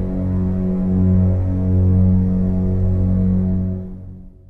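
Low, steady droning hum of a suspense film score, a sustained bass pad with no melody, fading out near the end.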